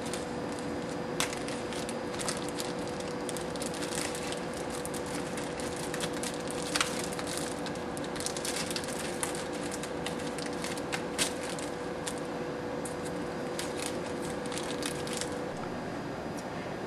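Small plastic zip bag and paper cards being handled, giving scattered crinkles and clicks over a steady faint hum.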